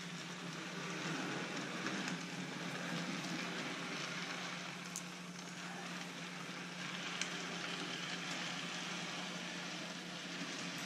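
Electric model train running around an oval of track: a steady motor hum under the rolling hiss of the wheels on the rails, with a couple of faint clicks.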